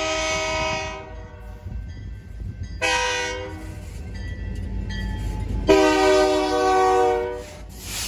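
Air horn of a BNSF EMD SD40-2 freight locomotive sounding the grade-crossing signal: a long blast ending about a second in, a short blast about three seconds in, then a long blast of nearly two seconds. The low rumble of the approaching locomotives runs underneath.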